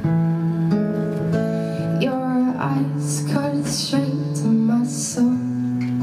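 Solo acoustic guitar playing an instrumental passage of a song, strummed chords ringing and changing every half second or so.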